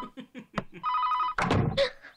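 Telephone ringing: a short burst of a rapidly warbling two-tone electronic ring, about half a second long, near the middle. A thud follows right after it, then a brief vocal sound near the end.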